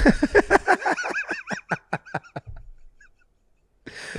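A man's laughter: a fast run of ha-ha pulses, loudest at the start and dying away about two and a half seconds in.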